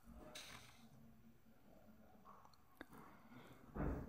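Near silence, with a few faint soft scrapes and a light click or two: a metal fork spreading butter over naan on a steel plate.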